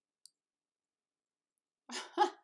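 A single short computer-mouse click about a quarter of a second in; otherwise near silence.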